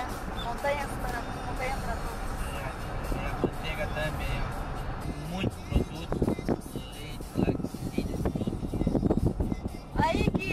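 Steady road and engine rumble inside a moving car, with music and indistinct talking in the background.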